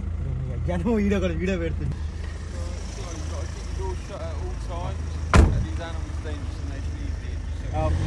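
Steady low rumble of a car moving slowly, heard from inside the cabin, with one sharp knock about five seconds in.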